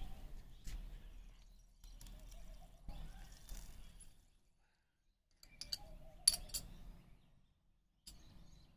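A steel spoon clinking against glassware while sugar is spooned from a small glass bowl into a glass of water. A few sharp, bright clinks come close together about six seconds in.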